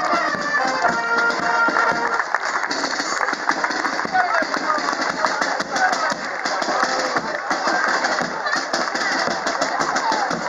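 Brass band playing, its held notes clearest in the first couple of seconds, over the chatter of a crowd and children's voices.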